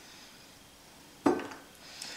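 Quiet room tone, then just past a second in a single sharp clack as a small plastic food-colouring bottle is set down on the stone benchtop.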